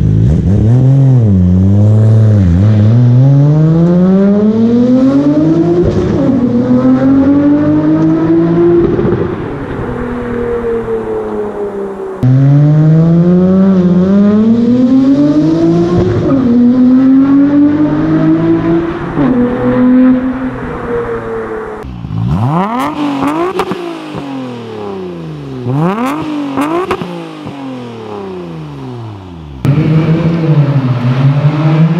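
Nissan Skyline R34 GT-R's twin-turbo RB26 straight-six, through an HKS exhaust, pulling hard through the gears: the engine note climbs and dips at each upshift. A second pull follows about twelve seconds in. Near the end the car passes by, its note rising and then falling.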